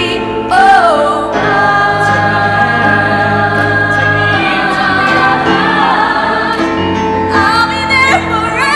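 Youth show choir singing in full harmony: a lead voice sings a short riff about half a second in, then the choir holds sustained chords.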